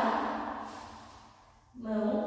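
A woman's voice holding long, sung notes: one slides down in pitch and fades away, and a new note starts near the end.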